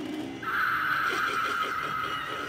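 Animatronic dragon Halloween prop playing its recorded dragon cry, one long high cry that starts about half a second in.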